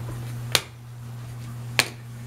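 A hard plastic toy ring knocked against a hardwood floor: two sharp knocks, about half a second in and again near the end, over a steady low hum.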